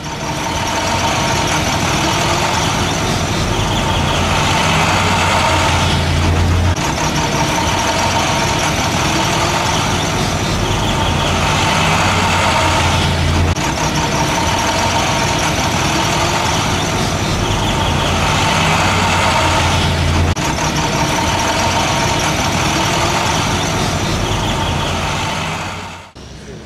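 Steady street traffic: the engines of cars, pickups, a truck and motorcycles running at low speed over a potholed road. The noise stays even, with a pattern that repeats about every seven seconds.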